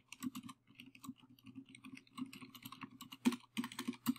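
Typing on a computer keyboard: a quick, uneven run of key clicks, about six a second, with one sharper click a little after three seconds in.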